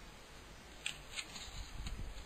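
A pause in a spoken reading: faint background hiss and low hum of the recording, with a couple of faint short clicks about a second in.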